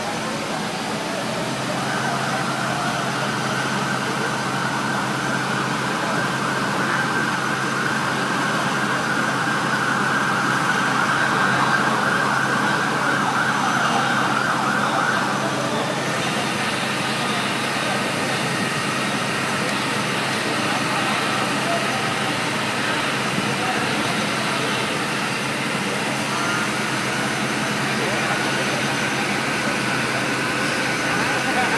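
Fire truck engine running steadily to drive its pump, with a dense rushing noise over it that drops away about halfway through.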